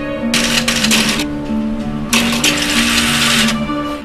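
Typewriter keys clattering in two bursts of rapid typing, a short one near the start and a longer one from about halfway, over background music with long held notes.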